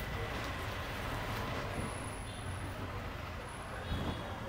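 Steady background noise: a low hum under an even hiss, with no distinct events, and a faint thin high whistle briefly around the middle.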